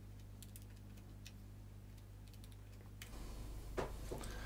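Faint clicks of a Casio scientific calculator's keys being pressed one at a time, a few taps spread out, to work out a sum. A soft knock comes near the end.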